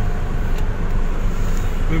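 Steady road traffic noise: car engines running and tyre and road rumble, with no distinct event standing out.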